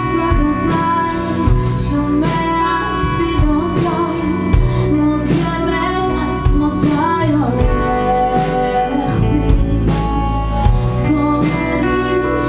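Live band music: a woman singing into a microphone over plucked guitar and a drum kit.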